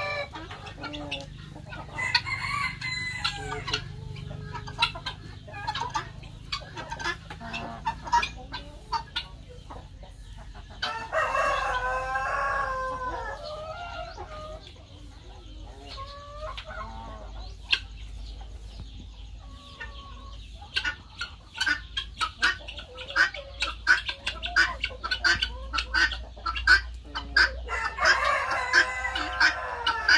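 A flock of chickens clucking, with a rooster crowing about ten seconds in and again near the end. Rapid short, sharp calls or clicks grow dense over the last third.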